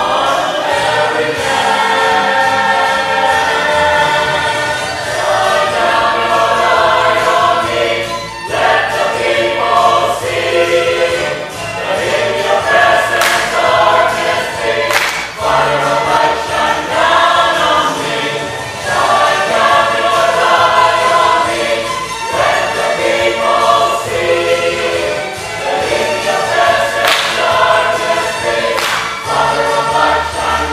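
Church choir singing over instrumental accompaniment with a moving bass line, and a few sharp percussive hits in the middle and near the end.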